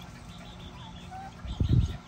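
Young chickens giving a few faint, short chirps. A brief low rumble near the end is the loudest sound.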